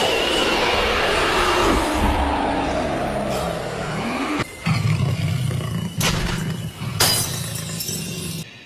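Anime sound effects: a loud shattering crash as the crystal necklace breaks. It is followed by a rushing roar that falls in pitch over about four seconds as the Nine-Tails' chakra erupts, then a low steady rumble with two sharp hits about six and seven seconds in.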